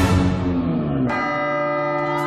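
Edited-in music with bell-like ringing tones. A sharp hit comes right at the start, and a new held chord of bell tones enters about a second in and rings on.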